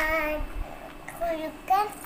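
A young girl singing in a sing-song voice: a drawn-out note at the start, then a short higher vocal sound near the end.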